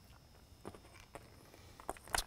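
Faint handling sounds: a few soft clicks and taps as a Whelen M2 LED lighthead is picked up and turned over in the hands on a tabletop.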